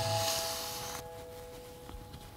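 The last held piano notes of the background music die away, with a soft hiss over the first second that cuts off sharply.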